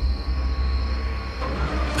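A deep, steady low rumble, a dramatic horror-cartoon sound effect, with a faint high steady tone above it.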